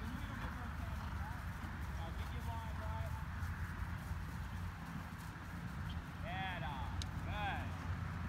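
Horse hoofbeats on grass as horses canter and walk across a field, over a steady low rumble. Short high rising-and-falling calls come about six and seven and a half seconds in.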